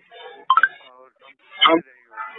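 Recorded telephone call: faint, muffled speech over a narrow phone line, broken by two loud short bursts of line noise about half a second in and near the end.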